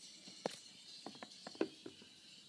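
A few light, sharp taps and clicks as a hand reaches into a plastic bowl of water and touches the submerged phone to wake its screen.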